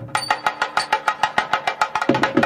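Thavil drum played in a fast run of crisp strokes, about five or six accents a second, with no deep bass strokes.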